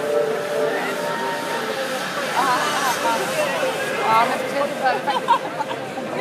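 Crowd chatter in a large sports hall: many overlapping voices, with a few people calling out in the middle of the stretch.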